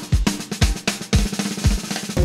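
Drum kit playing a break in swing-style music, a quick run of snare and bass drum hits between fuller band passages.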